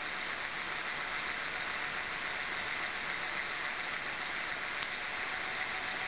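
Brushless hub motor spinning its wheel at 99% throttle under a BLDC controller's drive, heard as a steady, even hiss with no change in pitch.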